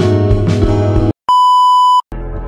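Intro music with a regular beat cuts off about a second in; after a brief gap, a steady high test-tone beep of the kind played over TV colour bars sounds to the end.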